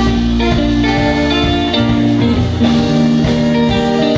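A live band playing, led by electric guitar over a drum kit, loud and continuous.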